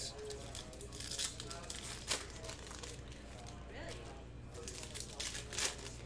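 A foil trading-card pack (2021 Panini Certified football) being torn open and crinkled by hand, with short crackling rips about a second in, at about two seconds and again near the end.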